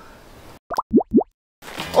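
Three quick cartoon 'plop' sound effects, each a short upward-sliding bloop, one after another in under half a second.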